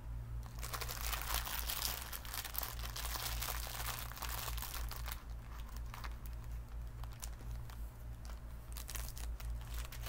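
Plastic packet of crochet safety eyes and washers crinkling and rustling as it is handled, busiest in the first half and thinner later.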